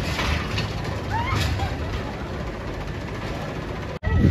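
Spinning coaster car running along its steel track with a mechanical clatter and low rumble, and a brief rising squeal about a second in.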